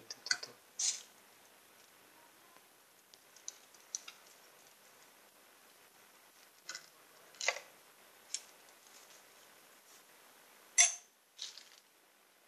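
Scattered handling noises of hands working on motorcycle parts: short clicks and scrapes a few seconds apart, the loudest near the end.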